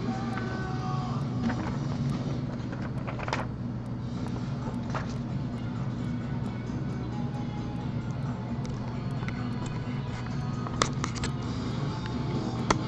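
Background music playing low and steady, with a few sharp clicks: one a little after three seconds in, one near five seconds, and two close together near the end.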